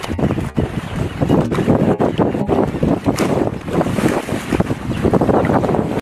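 Strong wind buffeting the microphone over choppy water, with water rushing and splashing.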